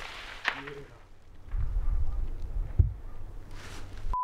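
The echo of a high-powered sniper rifle shot rolling away, with a sharp click about half a second in. A low rumble follows, with a single dull thump near three seconds in.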